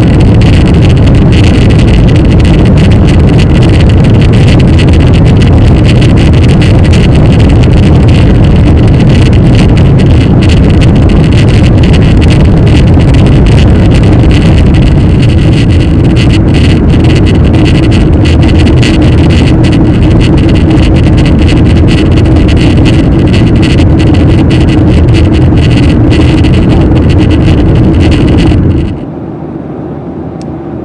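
Cabin noise of a Boeing 737-800 climbing out: a loud, steady rumble of the CFM56 engines and airflow, recorded heavy and distorted by a camera suction-cupped to the cabin window. About a second before the end it cuts abruptly to a much quieter, steady cabin hum.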